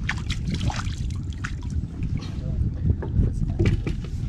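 Steady low rumble of wind on the microphone and water moving against the hull of a small outrigger fishing boat at sea, with scattered short clicks and knocks.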